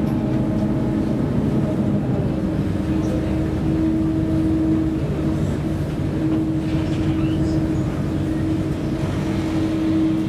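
A ferry's engines and shipboard machinery running: a steady low drone with a constant humming tone that swells and eases slightly.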